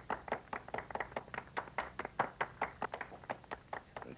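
Hand clapping by a small group, sharp separate claps at an uneven pace of about six a second.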